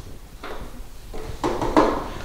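Short scraping knocks from hands working at a power chair's plastic rear battery cover as its screws are tightened back in: a faint knock about half a second in, then a cluster of scrapes near the end.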